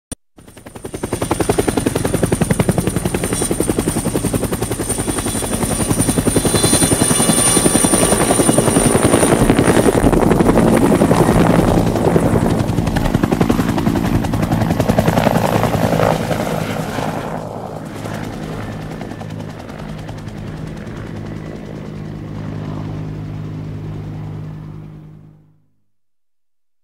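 Helicopter with a fast, even rotor chop and a high turbine whine. It builds up in the first couple of seconds, is loudest around ten seconds in, then recedes and fades out just before the end.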